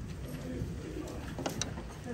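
Faint, indistinct murmuring of low voices in the room, with a couple of sharp clicks about one and a half seconds in.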